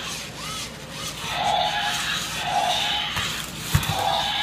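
Zoomer Dino self-balancing robot toy driving fast on a tile floor, its wheel motors whirring in surges about once a second as it balances, with a sharp thump near the end.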